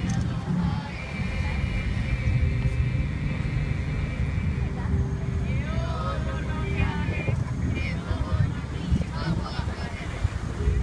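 A small group of voices singing, with a long held note early on and curving sung phrases later, over a steady low rumble.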